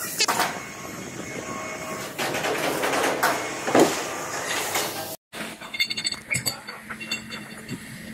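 Factory hall noise during a crane lift. After a sudden cut, a run of sharp metallic clinks comes from steel hoisting rings and shackles being handled.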